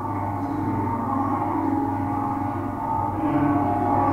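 Steady, sustained droning tones over a low hum, like ambient drone music, from the soundtrack of a virtual reality casino demonstration, getting a little louder near the end.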